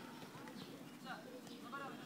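Faint, distant shouts of young footballers calling to each other across the pitch during play, over open-air background noise.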